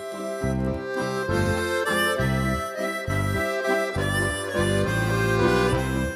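Instrumental music: a melody line over a low bass part that moves to a new note about twice a second.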